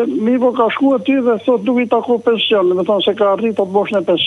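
Speech: a caller talking continuously over a telephone line, the voice thin and narrow in sound.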